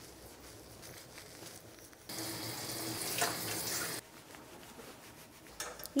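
Water spraying from a hand-held bath nozzle for about two seconds, starting and stopping abruptly.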